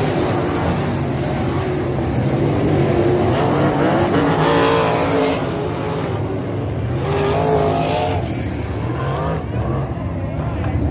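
A pack of 305 winged sprint cars racing on a dirt oval, their small-block V8 engines running hard. The engine note swells and bends in pitch as cars pass close, about four seconds in and again about seven seconds in.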